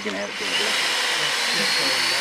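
Cordless drill boring a tap hole into a sugar maple trunk for sap collection, running steadily with a faint high whine.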